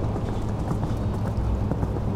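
Hoofbeats of a cantering horse on a sand arena, faint ticks over a steady low rumble of wind on the microphone.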